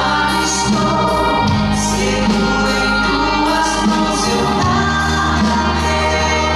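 Gospel worship group singing together in harmony over a band with electric guitar, held bass notes and a steady beat.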